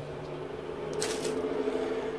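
Plastic ballpoint pens being handled, with a short rustle and click about a second in, over a steady low hum.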